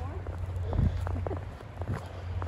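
Brief vocal sounds from a person's voice in the first second, over irregular footsteps crunching in snow and a steady low rumble.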